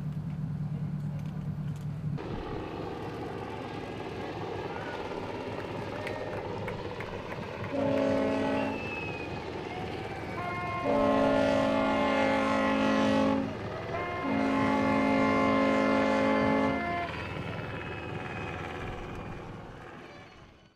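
Boat horns sounding over wind and sea noise: one short blast about eight seconds in, then two long blasts of several seconds each. A low hum stops about two seconds in.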